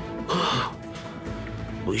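A man's single short cough or throat-clearing about a third of a second in, over a steady, low music score.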